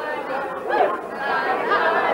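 Crowd chatter in a busy pub: many voices talking over one another in a steady hubbub.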